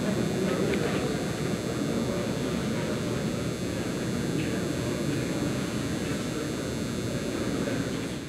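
Steady low rumble of room noise in a large indoor practice hall.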